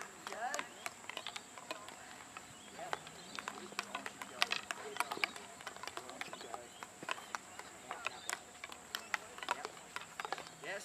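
Field hockey sticks tapping balls as several players dribble at once: an irregular scatter of sharp clicks, with voices in the background.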